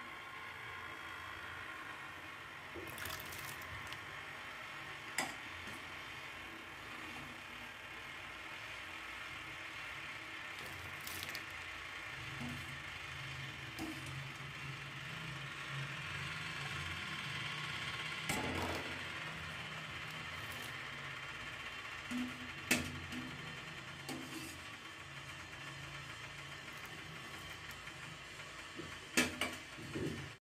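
Slotted steel spoon scooping blanched green peas out of hot water in a steel pot and tipping them into a bowl of cold water. There is faint sloshing and dripping, with a few sharp clinks of the spoon against the pot, over a steady low hum.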